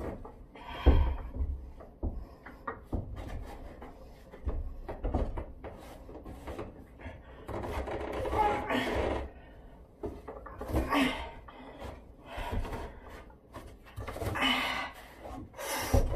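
A climber straining on wooden ceiling beams: a sharp thump about a second in, then scattered knocks and rubbing against the wood. Several effortful breaths and grunts come between them.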